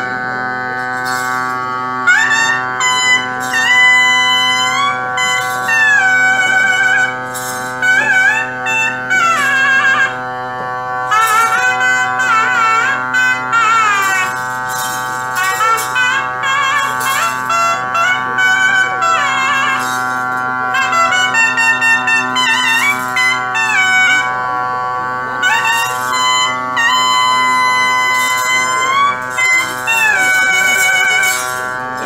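A ritual band of trumpets and other wind instruments plays an ornamented melody with frequent quick trills over a steady held drone.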